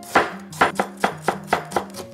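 Kitchen knife finely shredding cabbage on a cutting board: a quick, even run of short chopping strokes, about four to five a second. Quiet background music plays underneath.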